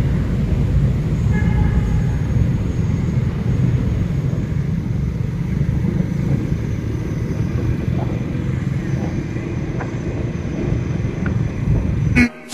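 Motor scooter being ridden at town speed: a steady engine and road rumble, with wind noise on a handlebar-mounted camera's microphone.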